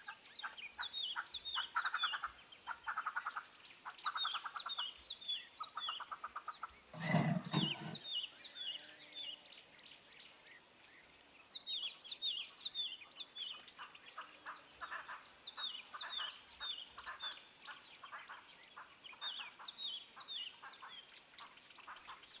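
Wild birds calling: bursts of short, high, downward-sliding chirps repeating throughout, mixed with rapid buzzy trills. A brief, lower, louder call or grunt stands out about seven seconds in.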